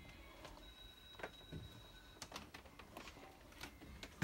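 Near silence: room tone with a few faint scattered clicks and a thin, faint high whine for about a second and a half early on.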